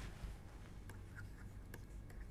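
Faint scratching and light tapping of a stylus writing on a tablet screen, over a low steady hum.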